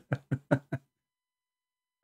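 A man chuckling: four short bursts in the first second, then silence.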